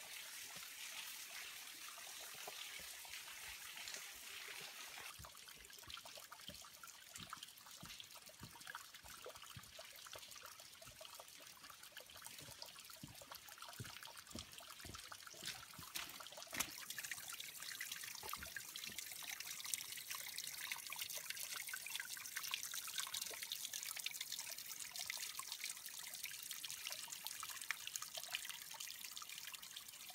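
Water trickling and dripping down a wet rock face, fed by recent heavy rain, with scattered short knocks. The sharpest knock comes a little past halfway.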